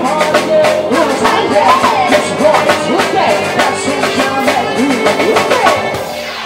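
Live rock band playing: a drum kit keeps a fast, steady beat under keyboard and electric guitars, with a sliding melodic lead line on top.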